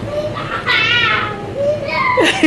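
A young child's high-pitched, wordless shout lasting about half a second near the middle, with faint voices around it.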